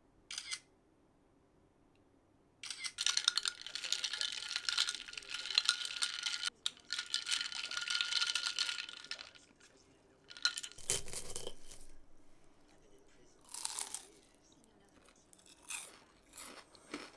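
A metal stirrer swirling ice in a glass of iced coffee, a dense clinking rattle with a light ringing for about six seconds. Shorter knocks and scrapes follow near the end.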